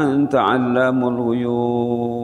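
A man's voice chanting an Arabic supplication in slow, sung recitation. After a short gliding phrase it settles on one long held note.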